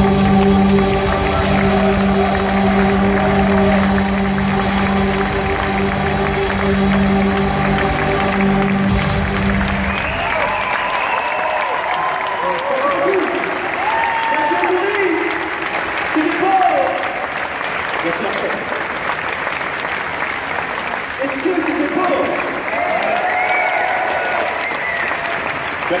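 Orchestra and choir hold a final sustained chord that ends about ten seconds in. A large audience follows with applause and cheering voices.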